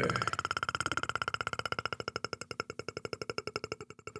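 Synthesized electronic tone pulsing rapidly and evenly, slowly fading away, from the opening of a film's soundtrack.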